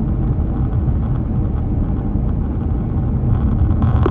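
Steady road noise of a car driving at highway speed, heard from inside the cabin, mostly deep in pitch and unchanging.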